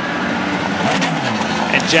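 IndyCar race car engines running in the pit lane, with several steady notes; one falls in pitch over about a second in the middle.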